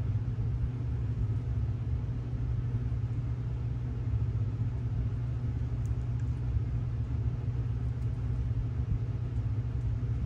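A steady, unchanging low hum.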